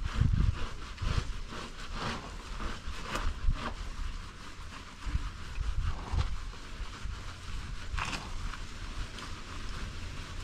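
Wind buffeting the microphone with a low rumble, over a few faint scrubbing and splashing sounds from a motorcycle being hand-washed with soapy water; a sharper one comes about eight seconds in.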